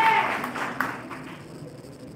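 Audience applause in a meeting hall, dying away about a second in.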